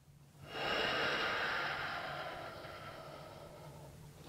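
A man's long, deep breath out. It starts about half a second in and tails off slowly.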